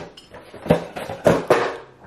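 A few short, sharp knocks and clinks in quick succession, the loudest about halfway through and near the end, as a glass of iced coffee with a metal straw is handled and set about.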